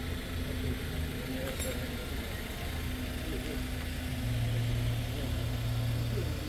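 A vehicle engine idling with a steady low hum that gets louder about four seconds in, with faint voices in the background.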